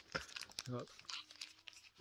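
Foil Pokémon booster-pack wrappers crinkling as they are handled, with a few short crackles near the start.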